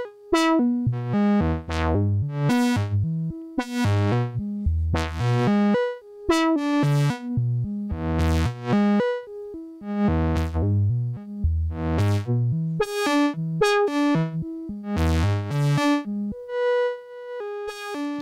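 Doepfer A-100 modular synthesizer playing a stream of quantized random notes from a VCO through the A-121 filter. Each note is struck by an envelope on the filter, so it starts bright and quickly goes dull, at uneven intervals set by random gates. Near the end one note is held steady.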